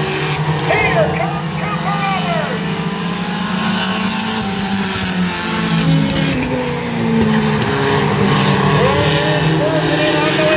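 Several pure stock race cars' engines running in a steady drone as they lap a short oval, rising in pitch about six to seven seconds in as the cars accelerate. A voice is heard over the engines during the first couple of seconds and again near the end.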